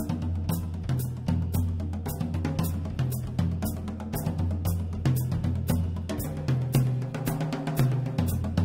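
Drum kit playing a sixteenth-note single-plus-double sticking pattern (one single stroke and two doubles, hands reversing) with shifting accents, strokes coming about five or six a second, over a bass line of low notes.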